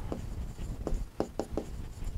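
Pen writing on an interactive display screen: light scratching with a few short taps of the tip on the glass in the second second.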